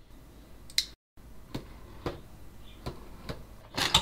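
Hands handling a cardboard retail box: a few light clicks and taps of fingers on cardboard, then a louder short scrape near the end as the box's lid flap is pulled open.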